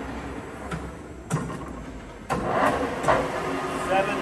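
Sharpe 18" x 80" gap bed engine lathe at its headstock speed-change levers: a few metallic clunks from the gear levers, then a little over two seconds in the spindle drive is engaged and the headstock gearing starts running, clearly louder, at a new spindle speed.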